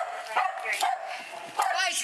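Small dogs barking in short, sharp bursts, heard through a police body camera's microphone, with people shouting toward the end.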